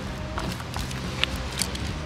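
Loose stones knocking and clicking as a hand lifts them out of a rock crevice: a few short, sharp knocks over a steady low hum.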